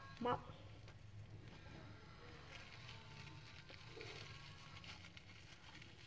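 Faint crinkling and rustling of plastic cling film being wrapped and twisted tight around a sticky gấc rice cake, over a low steady hum.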